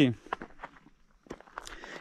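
A few scattered, soft footsteps crunching on a gravel and dirt track, with a brief pause in the middle.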